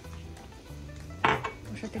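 A red plastic scraper knocking against a stainless steel frying pan as sugar is scraped off it into the pan: one sharp metallic clank about a second in that rings briefly, with softer scraping around it.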